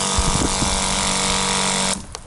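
A small 12-volt SEAFLO diaphragm water pump running with a steady motor hum, pushing water out through a shower head with a steady hiss of spray. The sound cuts off abruptly near the end.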